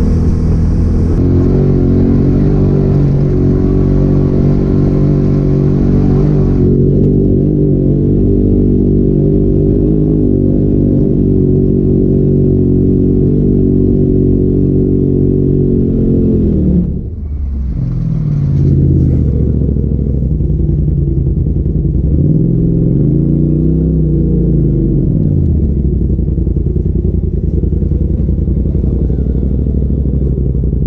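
Polaris RZR side-by-side engine running steadily as the machine drives along. After a brief dip about halfway through, the engine note rises and falls once, as if revved up and then eased off.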